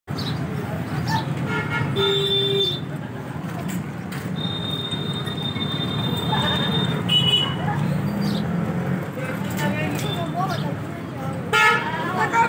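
Street traffic with a steady low rumble, a vehicle horn sounding about two seconds in, and a long high tone from about four and a half to seven seconds. Voices talk in the background.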